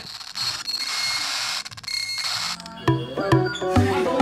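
An edited static-noise sound effect with a few thin high tones in it, lasting about two and a half seconds. Then background music with plucked, percussive notes starts.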